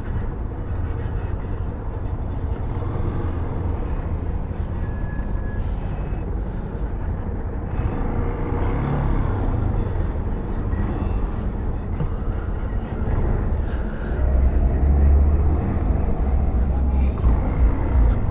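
Yamaha Fazer 250 single-cylinder engine running at low speed in traffic, heard from the rider's seat as a steady low rumble mixed with wind and road noise. A brief high squeal sounds about five seconds in, and the rumble grows louder near the end.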